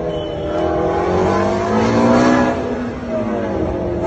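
Sports car engine revving, its pitch climbing to a peak about two seconds in and then falling away.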